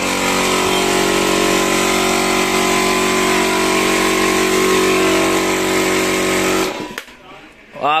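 Two portable 2 HP piston air compressors, an Ingco and an AG, running together with a steady motor and pump hum. The sound cuts off suddenly near the end.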